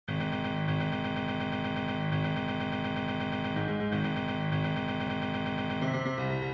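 Piano playing a fast, even run of repeated notes on one low key, with higher notes held above it; the music begins abruptly at the start.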